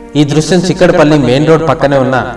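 A man's narrating voice, speaking continuously.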